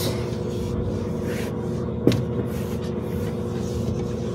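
Washing machine running with a steady hum, and a single sharp knock about two seconds in.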